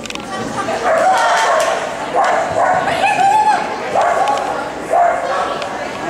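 A dog barking in short barks, roughly once a second, while running an agility course, with people's voices behind.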